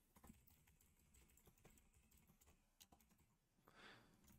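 Very faint computer keyboard typing: a run of quick, light keystrokes entering a line of code.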